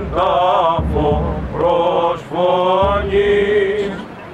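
Male voices singing Greek Orthodox Byzantine chant in long, melismatic phrases whose melody wavers up and down, with brief breaks between phrases.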